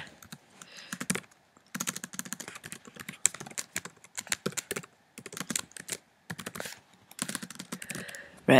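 Typing on a computer keyboard: runs of quick key clicks broken by short pauses.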